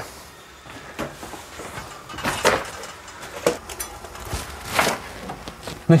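Footsteps and handling of gear: a few scattered scuffs and rustles with quiet between them, the loudest about two and a half seconds in and again near five seconds.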